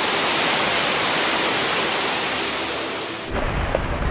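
Floodwater torrent rushing, a loud, even wash of water noise that cuts off abruptly about three seconds in, giving way to a low hum.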